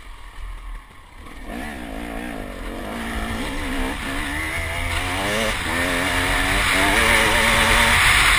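KTM 300 two-stroke enduro motorcycle engine, heard from the rider's helmet: nearly off the throttle at first, it picks up about a second and a half in and accelerates, its pitch climbing and dipping with several short breaks. Wind noise grows louder as speed builds toward the end.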